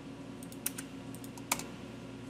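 Typing on a computer keyboard: a quick, uneven run of about seven separate key clicks, the last and loudest about one and a half seconds in, as a spreadsheet formula is entered.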